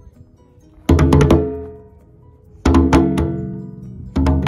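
Outdoor playground drum struck by hand in two quick runs of slaps, about a second in and again past halfway. Each run rings on with a resonant, pitched tone that slowly dies away.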